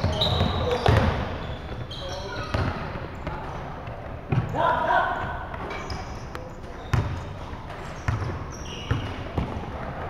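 A basketball bouncing and striking the hardwood floor of a large gym in scattered knocks, with short high sneaker squeaks and players calling out across the hall, loudest in the middle.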